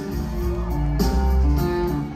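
Live rock band playing through a concert PA, heard from the audience: guitar chords held over bass and drums. A cymbal hit comes about halfway through.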